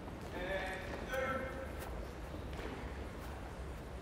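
Boys dribbling soccer balls across a wooden gym floor: light, scattered taps of ball touches and sneaker steps. A distant voice calls out twice in the first second or two.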